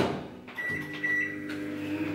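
Microwave oven being started: a knock at the very start, then from about half a second in the steady electrical hum of the oven running, with a high beep-like tone lasting under a second.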